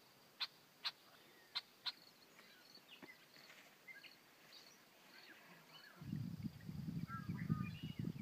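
Faint outdoor background with scattered bird chirps. Four sharp clicks come in the first two seconds, and a louder low rumbling noise fills the last two seconds.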